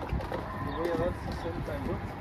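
Faint voices talking in the background, with a low steady rumble underneath.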